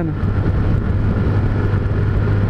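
Honda CG Titan single-cylinder motorcycle engine running at a steady cruising speed, with wind rushing over the helmet-mounted camera.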